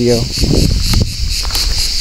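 Steady, high-pitched chirring of an insect chorus, with a low rumble underneath and a single click about a second in.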